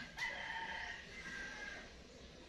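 A rooster crowing once: a single long, held call of about a second and a half.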